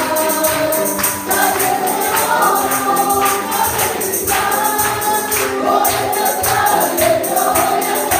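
Congregation and worship leader singing a Spanish-language praise song together with live accompaniment, and a steady high jingling beat like a tambourine running through it.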